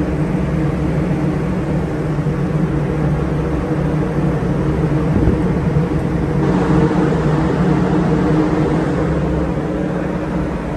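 Turbocharged Cummins diesel engine of a marine emergency generator running at steady speed, a constant loud drone. About six and a half seconds in, a brighter hiss rises over it.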